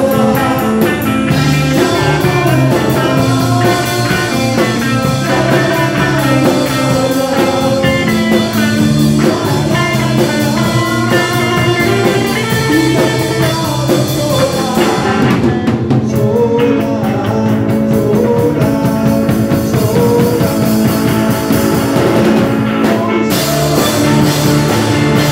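A live rock band playing, with the drum kit loud and close, electric guitar, keyboard and a singing voice. The high cymbal wash drops out for a moment about fifteen seconds in, then returns.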